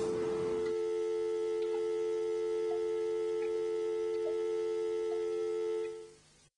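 Landline telephone dial tone heard from the handset: a steady, unbroken two-note hum that fades out at the very end. It is the sign that the other end has hung up and the line is back to a dial tone.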